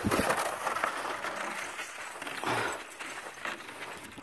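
Irregular crunching and scraping of footsteps on crusted snow and ice.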